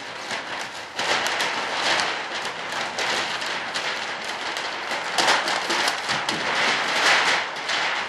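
Clear plastic vacuum-bag film crinkling and rustling as it is handled, a dense crackle of many small clicks that grows louder about a second in.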